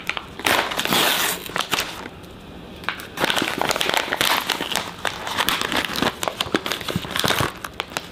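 Foil-lined paper coffee bag crinkling and crackling as it is handled, torn open along its top and its zip pulled apart.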